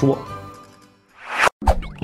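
The last spoken word, with background music fading out behind it. Then a short swelling whoosh that cuts off suddenly, and a pop sound effect about one and a half seconds in.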